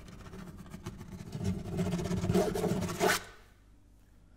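Acoustic guitar played percussively: a scraping noise on the instrument swells over about two seconds and ends in one sharp slap about three seconds in, followed by a near-quiet pause.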